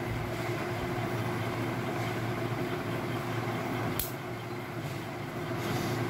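Steady low background hum, with one sharp click about four seconds in.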